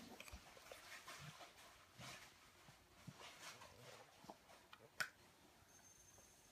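Near silence: room tone with faint soft rustles and a single click about five seconds in.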